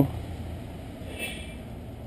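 Steady low background hum of room tone between spoken remarks, with a faint short sound about a second in.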